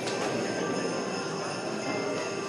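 Jingle bells ringing continuously in an even, shimmering jingle.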